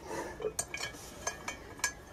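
About five light metal clinks and taps, irregularly spaced, from a plate-loaded pinch-grip block and its loading pin being handled on a stack of iron weight plates.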